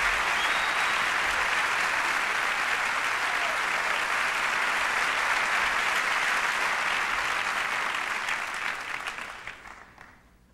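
Large audience applauding steadily, then dying away over the last two seconds.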